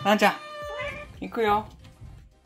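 A kitten meowing several times, begging for food at dinnertime; the loudest meow comes about a second and a half in.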